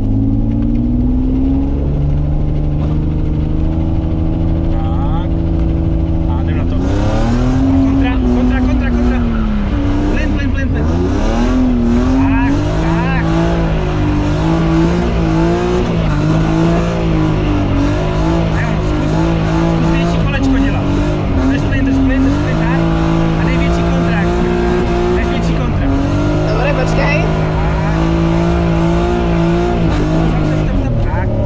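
BMW E36 drift car sliding under power: the engine's revs climb steadily, then from about seven seconds in are held high, dip and climb again over and over as the throttle is lifted and pressed, with tyre squeal from the sliding rear wheels.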